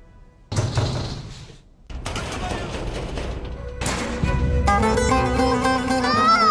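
A sudden loud bang about half a second in, dying away over about a second, then a stretch of noisy clatter, with music coming in for the last second or so.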